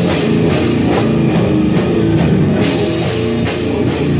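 A metal band playing at full volume: distorted guitar and bass over a pounding drum kit, with the high cymbal wash dropping out for about a second midway.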